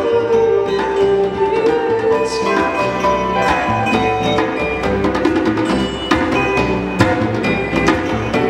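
A live band playing with electric guitars, piano and a hand drum, which keeps up a steady beat under held melody notes.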